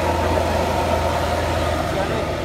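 Hino RK8 tour bus's diesel engine running steadily, a low even drone with no revving.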